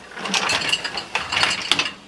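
Plastic parts of an open dishwasher being handled: a rapid, uneven run of clicks and rattles lasting most of two seconds.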